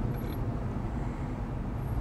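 Steady low rumble of a Jeep's engine and road noise, heard from inside the cabin while it is driven.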